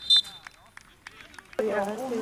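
Referee's pea whistle, two short shrill blasts right at the start, signalling the goal just scored. A man's voice calls out near the end.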